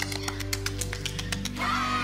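Background music with quick hand claps, about eight a second, through the first second and a half. Near the end a woman's voice gives a falling 'ooh'.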